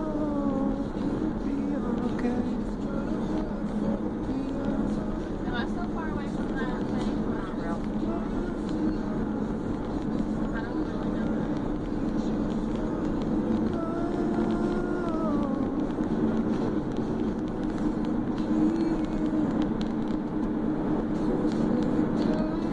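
Steady road and engine noise inside a moving car's cabin, with a voice heard at times, drawing out one long, wavering note about fourteen seconds in.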